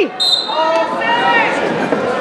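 Voices shouting and calling out in a gym hall during a wrestling bout, with a brief high whistle tone just after the start.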